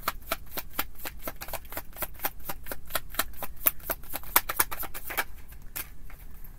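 A deck of tarot cards being shuffled by hand: a quick, even run of crisp card clicks, about six a second, that stops shortly before the end.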